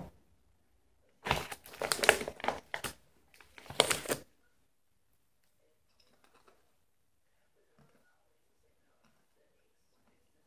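Potato chip bag crinkling as it is handled, in two bursts, the first about a second in and lasting over a second, the second shorter.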